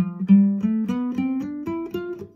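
Nylon-string classical guitar playing a slow rising picado scale passage, single notes plucked one at a time, about four a second, each a step higher than the last.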